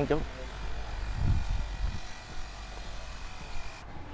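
Steady low hum inside the cabin of a stationary car, with a faint thin steady tone that cuts off just before the end.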